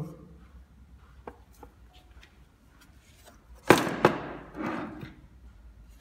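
A few faint clicks, then a sharp knock about three and a half seconds in, followed at once by a second tap and a short scraping rustle: the 3D printer's metal casing being handled as a cover panel is taken off and set down.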